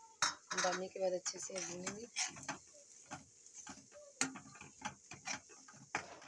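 Metal spatula stirring thick masala and cream in a kadai, scraping and clinking against the pan in a quick, irregular run of clicks.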